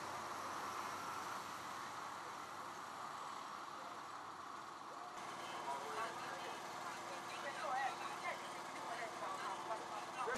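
Faint outdoor background sound: a steady hiss, then, about halfway through, distant people talking over a low steady hum.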